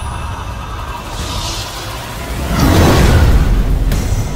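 Trailer music and sound design: a steady low rumbling drone with a whoosh about a second in, then a loud booming swell from about two and a half seconds in.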